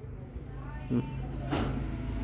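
A used small-engine carburetor handled in the fingers, with a short click about one and a half seconds in as its throttle plate is swung open, over a steady low hum.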